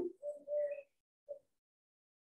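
A bird calling faintly in the background: two short, steady call notes in the first second, then a brief faint note.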